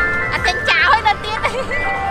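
An ice cream van's jingle playing as a tune of steady held notes, with a voice over it.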